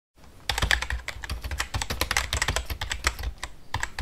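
Typing on a computer keyboard: a rapid, uneven run of key clicks starting about half a second in.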